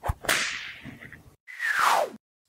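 Whip-crack sound effect: a sharp crack, then a whoosh that fades out, followed by a second whoosh with a falling pitch near the end.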